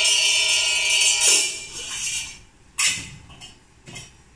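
A metal ritual bell shaken so that it jangles and rings steadily, stopping about a second in and dying away. Then a single short metallic strike comes near three seconds, and a fainter one comes near the end.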